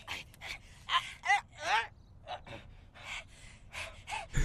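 Two cartoon boys grunting, gasping and crying out in effort as they scuffle, a string of short breathy cries with quick rising and falling pitch.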